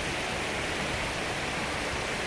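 River rapids rushing over rocks: a steady, even wash of running water.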